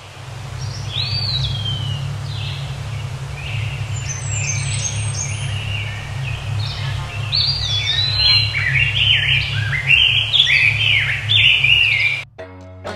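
Songbirds chirping and singing over a steady low rumble, the calls short and gliding in pitch and growing busier and louder in the second half.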